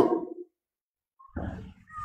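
A man's spoken word trailing off, then about a second of silence, then faint short vocal sounds near the end as he draws breath to speak again.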